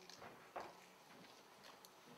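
Near silence: room tone with a couple of faint knocks about half a second in.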